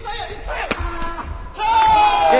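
A single sharp smack of a badminton racket hitting the shuttle about two-thirds of a second in. Near the end a player lets out a loud, long shout that slowly falls in pitch, celebrating the winning point.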